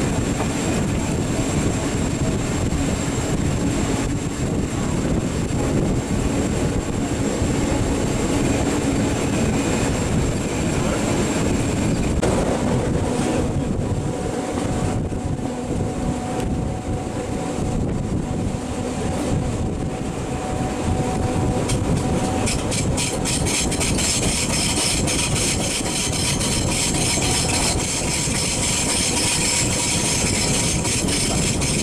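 Historic LEB Are 4/4 25 electric railcar running along the line, heard from on board: a steady rumble of wheels and motors with faint whining tones. In the last several seconds, a fast, regular ticking rattle joins in.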